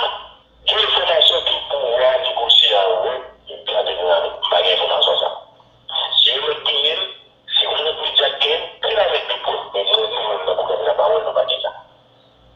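A person's voice talking in phrases of a second or two with short pauses, thin and narrow-sounding like speech over a telephone or radio.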